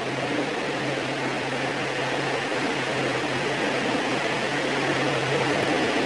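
A steady hiss with a low, even hum underneath, like a running fan.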